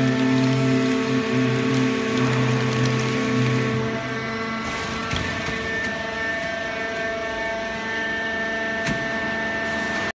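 Fully automatic horizontal hydraulic baler running, a steady machine hum made of several held tones. About five seconds in, the low hum drops away and a higher steady whine comes in.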